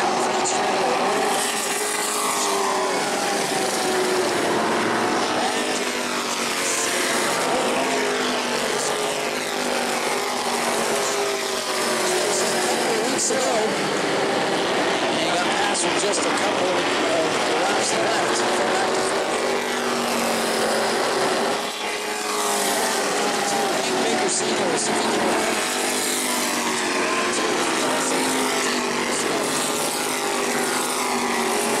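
E-Mod race cars running around a short oval at racing speed, several engines at once, their pitch rising and falling as the cars go through the corners and pass by.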